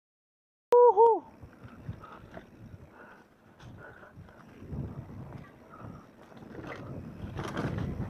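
Mountain bike rolling fast down a dirt singletrack: tyre noise, rattling of the bike and wind on the microphone, growing louder near the end. The sound cuts in abruptly about a second in with a short voice-like call that dips in pitch, the loudest moment.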